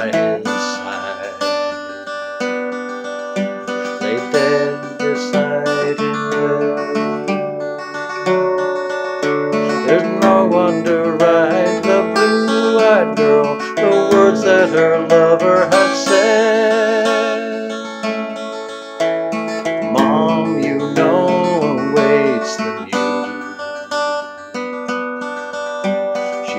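Solo acoustic guitar strummed and picked in a slow folk-ballad accompaniment, with a man's voice singing over it at times.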